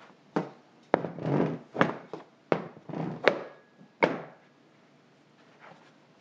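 Kitchen handling sounds while fitting pastry into a metal tart pan: about six sharp knocks of the pan and a wooden board against a stainless-steel counter, with rubbing and scraping between them. The knocks end about four seconds in.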